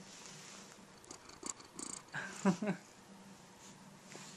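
Domestic tabby cat purring steadily, close to the microphone, with brief rustling of handling and a woman's short laugh about halfway through.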